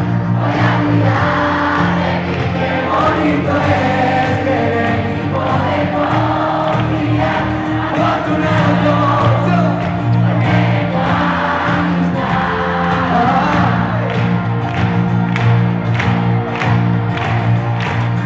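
Live pop band playing through a concert sound system with a steady drum beat, while a large crowd sings along in unison.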